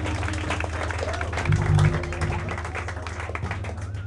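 A live band's held note stops and the last electric guitar and bass notes ring out as the audience claps. A brief low bass note about one and a half seconds in is the loudest moment, and the sound then fades.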